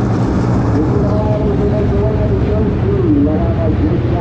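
Dirt-track modified race car engines running together: a loud, steady low rumble with wavering engine pitch.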